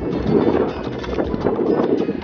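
Wind buffeting the camera's microphone in a loud, uneven rumble.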